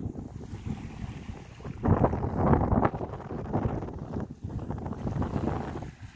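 Wind buffeting the microphone outdoors, a gusting rumble that grows to a stronger gust about two seconds in.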